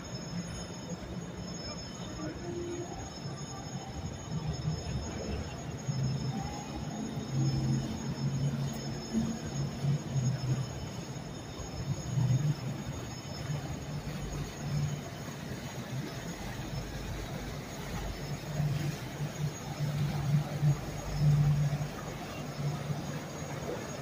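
Boat engines running low as motor yachts and a small workboat pass on the river. The engine rumble rises and falls and is loudest near the end, as the workboat comes close. Distant voices and city noise sit underneath.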